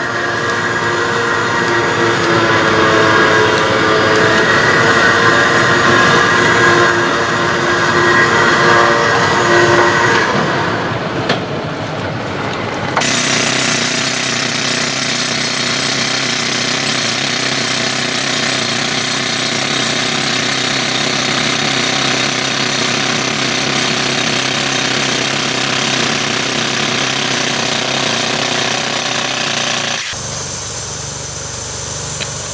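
For about the first ten seconds, a vehicle engine running under load with a whining tone as a ute is towed out of deep mud. About thirteen seconds in the sound changes abruptly to a handheld pneumatic rock drill hammering steadily into granite, drilling blast holes.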